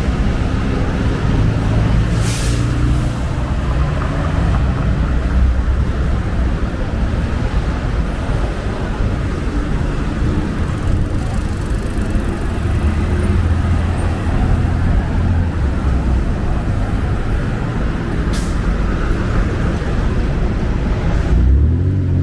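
Steady city street traffic, a continuous low rumble of engines and tyres, with two brief sharp hisses, about two seconds in and again near the end.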